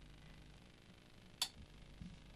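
Near silence: faint room tone, broken by a single short click about one and a half seconds in.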